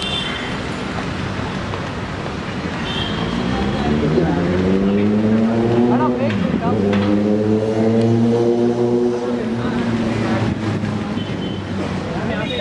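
A motor vehicle's engine accelerating on the street. Its pitch rises over a few seconds, drops sharply for a moment about six and a half seconds in, then holds steady and eases off near the end.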